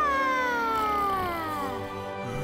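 A cartoon boy's long, high-pitched dreamy vocal 'aww', gliding slowly and smoothly down in pitch without a break.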